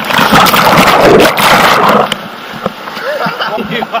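Loud rush and churn of water as a rider splashes down from a water slide into the pool, lasting about two seconds. It then drops to quieter splashing with voices and a shout near the end.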